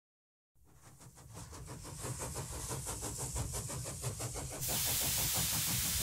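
Steam locomotive sound effect: a steady chuffing of about six beats a second that fades in and grows louder. About four and a half seconds in it gives way to a steady hiss of steam.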